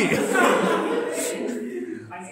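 Many voices at once: a room of people laughing and talking over each other, dying away toward the end.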